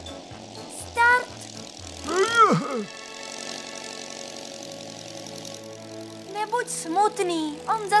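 Cartoon engine of a small propeller plane droning steadily under background music. About two seconds in there is a swooping rise-and-fall cry, and voices come in near the end.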